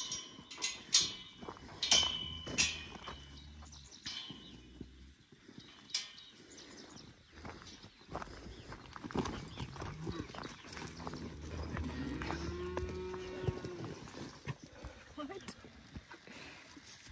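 Cattle mooing, with one long moo about twelve seconds in. Several sharp knocks sound in the first few seconds.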